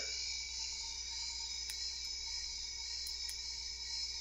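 Running Press miniature Ghostbusters PKE meter toy playing its electronic sound effect through its tiny speaker: a steady buzzing tone, with a few faint clicks. The owner takes the sound for its batteries dying.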